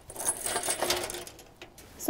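Metal chain, quick links and a nickel-plated ring jingling and clinking together as they are handled, a quick run of small metallic clinks in the first second or so that then dies away.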